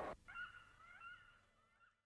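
Street noise cuts off abruptly, then faint bird calls: short rising and falling whistles repeating over about a second and a half.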